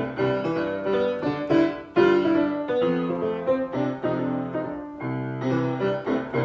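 Acoustic upright piano played by hand, chords and melody notes sounding steadily, with a loud struck chord about two seconds in.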